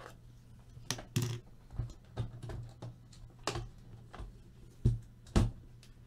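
Irregular clicks and taps of hands and a cutting blade working at the seals along the side of a metal Panini Flawless card briefcase, with two heavier knocks on the case near the end.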